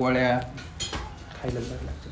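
A brief clink of metal kitchen utensils a little under a second in, between short bits of a man's speech.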